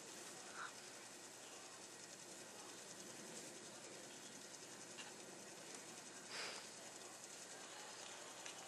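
Near silence: a faint steady background hiss, with a couple of faint brief sounds about half a second in and near the end.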